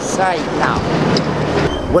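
Indistinct voices over a steady low engine hum of street traffic; the hum stops shortly before the end, when a man begins speaking.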